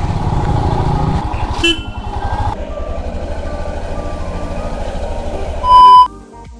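Motorcycle engine running with a steady low firing rhythm. Just before the end, a short, loud, steady electronic beep cuts in with a TV-static transition effect.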